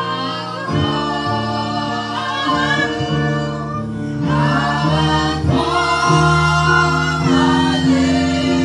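A woman singing a gospel song into a handheld microphone, over an instrumental accompaniment of sustained chords that change every second or two.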